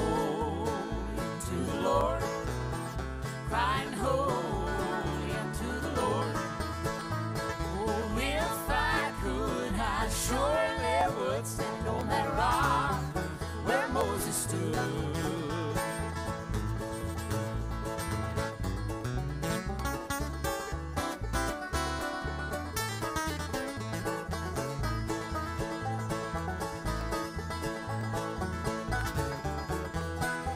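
Bluegrass gospel band playing live on banjo, mandolin, acoustic guitar and upright bass, with a wavering melody line over roughly the first half and a steady bass pulse throughout.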